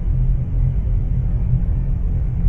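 A loud, steady, deep rumble sound effect, with almost nothing above the low bass.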